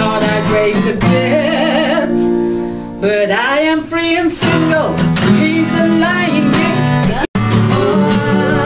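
Live acoustic duo: a woman singing, with held, wavering notes, over two strummed acoustic guitars. The sound drops out for an instant near the end, at an edit.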